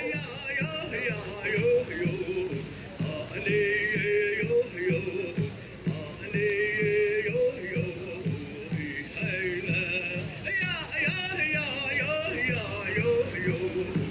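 Powwow drum and singers: a steady beat on the big drum, roughly two beats a second, under high-pitched, wavering chanted song.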